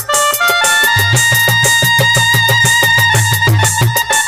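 A live Baul folk band plays an instrumental interlude. A melody instrument plays a quick run of rising notes, then holds one long note over a steady, repeating drum beat.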